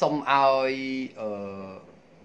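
A man's voice drawing out two long syllables, each held at a nearly level pitch, with a chant-like sound.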